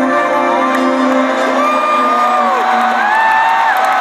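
Live rock band and singer performing in an arena, with held sung notes over the band, heard from the stands amid the crowd's cheering and whoops.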